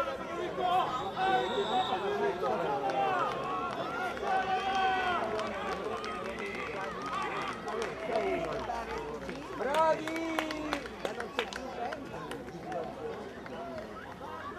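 Children's voices shouting and calling across an outdoor rugby pitch, with a few sharp clicks about ten seconds in.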